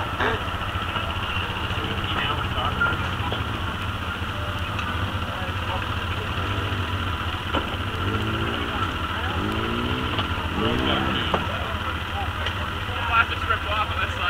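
ATV engine idling steadily.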